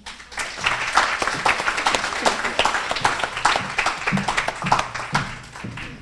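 Audience applauding: many hands clapping together, thinning out toward the end.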